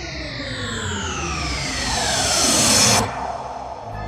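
Video game shrink-ray sound effect: a synthesized sweep of several tones gliding steadily downward in pitch, growing louder and cutting off suddenly about three seconds in. Music with a steady beat follows.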